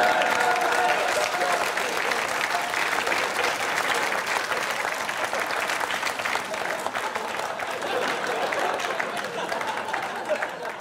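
Studio audience applauding, dying down toward the end.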